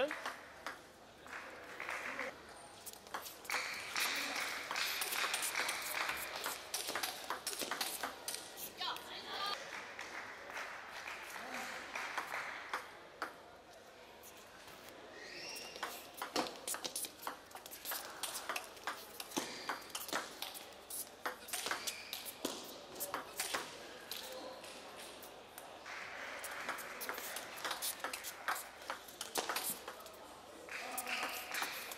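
Table tennis rallies: the celluloid ball clicking off the players' paddles and bouncing on the table in quick exchanges, several points played one after another.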